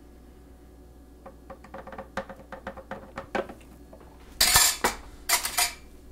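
Kitchen clatter of a plastic blender container knocking against a glass mason jar as the last of a smoothie is poured out: a run of light taps, then two louder knocks near the end.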